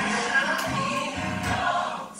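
Gospel music with a choir singing held notes.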